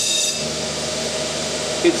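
A motor running steadily in the workshop. A high whine drops out just after the start, leaving a steady hum.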